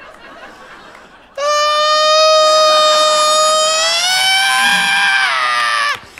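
A man imitating a baby's scream into a microphone: after a silent gape of about a second and a half, one long, loud, high-pitched wail that climbs in pitch near the end, then drops and cuts off.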